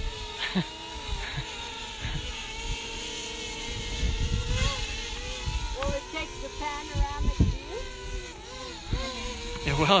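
Quadcopter drone propellers whining steadily in a hover, the pitch wavering as the motors correct, with wind rumbling on the microphone.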